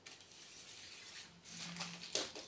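Faint rustling and light ticks of paper seed packets being picked up off a table and handled.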